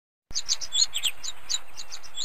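Small birds chirping: a quick, busy stream of short, high chirps starting a moment in.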